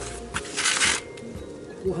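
Cordless drill-driver running in one short rattling burst, spinning a bolt off the scooter's rear wheel hub.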